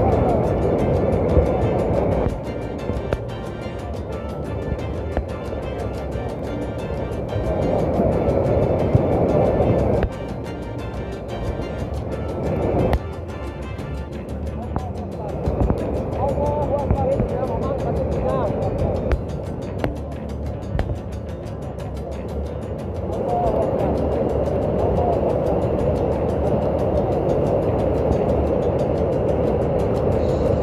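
Rushing water of a muddy flash flood, a dense continuous roar, mixed with background music and indistinct voices. The overall sound jumps up and down in level several times, at about 2, 10, 13 and 23 seconds.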